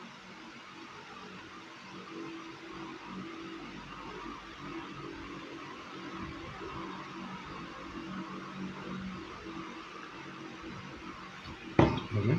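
Quiet room tone: a steady hiss with a faint low hum. Just before the end, a single sharp knock as a mobile phone is set down on the table.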